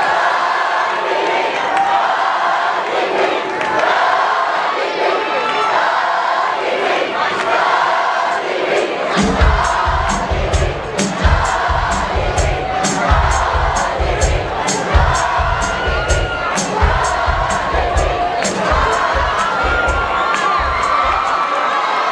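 Large crowd cheering and screaming. About nine seconds in, a live drum kit starts a steady beat of kick drum and cymbals under the cheering.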